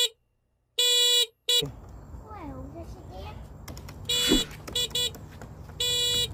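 Electronic horn of a child's ride-on toy quad beeping: one long beep about a second in, three short beeps a little past the middle, and another beep starting just before the end.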